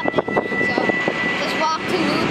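Freight train rolling slowly by, wheels clicking and knocking over rail joints and switches in quick succession, with a thin steady high tone that stops about halfway through.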